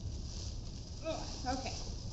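Tissue paper rustling as it is pulled from a box, with a brief wordless vocal sound, like a short hum, about a second in.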